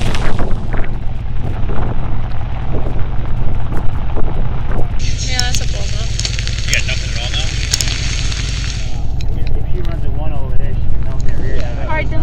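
Wind buffeting the microphone in the rain, a constant low rumble, with a brighter hissing gust from about five to nine seconds in; people's voices talk indistinctly underneath.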